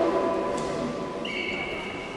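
The tail of an announcer's voice over the public-address system echoes and dies away in a large sports hall. A faint, steady, high-pitched whine comes in a little over a second in.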